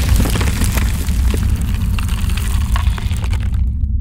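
Cinematic logo sound effect: a deep rumbling boom with a dense crackle, like stone cracking apart. The crackle cuts off near the end and the low rumble fades.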